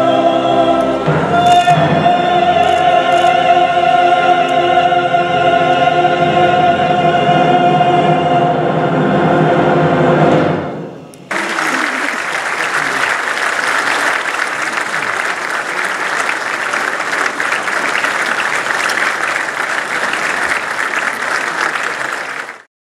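Two female singers and a male singer with a symphony orchestra hold long, steady closing notes that end about ten and a half seconds in. Then a large audience applauds steadily for the rest of the time.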